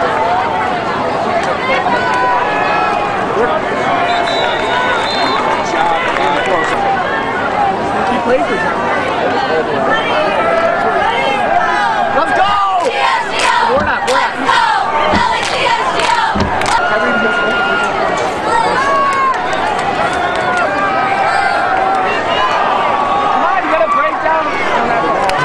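A football crowd and sideline yelling and cheering during a play, with many voices overlapping throughout. There is a cluster of sharp cracks around the middle.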